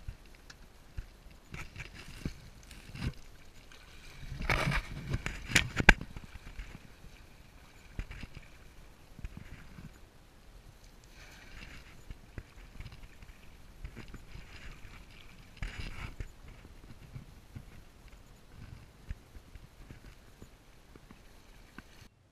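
Water splashing and sloshing, with scattered knocks and rustles, as a cast net is worked by hand in shallow water. A cluster of louder splashes and sharp knocks comes about four to six seconds in.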